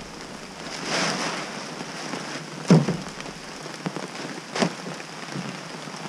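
Steady rain falling, with a tarp being rustled and pulled over kayaks on a trailer and a few sharp knocks, the loudest about three seconds in.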